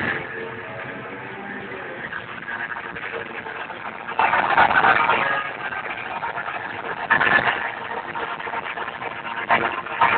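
Live rock concert as picked up by a phone's microphone: a dense, muddy din of crowd and amplified band with no clear tune. It swells louder about four seconds in and again around seven seconds.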